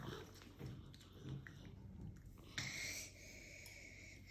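Quiet, scattered light clicks and scrapes of a metal spoon scooping soft dragon fruit flesh, with faint mouth sounds.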